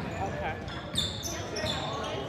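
Basketball sneakers squeaking on a hardwood gym floor: about four short, high chirps in quick succession in the second half, over thuds from the court and a ball bounce about a second in.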